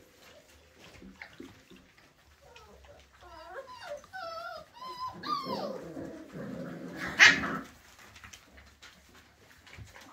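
Cocker spaniel puppies whining and whimpering, several wavering high-pitched calls overlapping for a few seconds. A single loud, sharp yip follows about seven seconds in.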